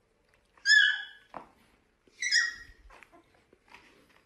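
A small fluffy puppy gives two short, high-pitched whines about a second and a half apart, each dropping in pitch at the end.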